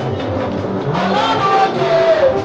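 Loud praise music with singing; a voice slides down in pitch over the second half.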